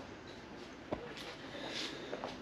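Quiet workshop room tone with a single sharp click about a second in and a brief faint hiss shortly before the end.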